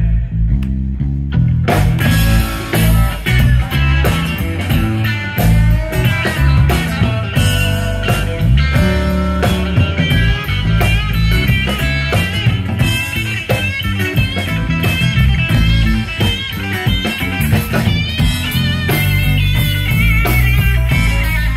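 Live rock band playing an instrumental passage with electric guitars, bass and drums. For the first couple of seconds only the bass is heard, then drums and guitars come back in.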